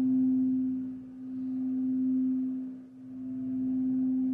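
Frosted quartz crystal singing bowl sounding one steady, sustained tone as a striker is rubbed around its rim, the volume swelling and dipping in slow waves about every two seconds.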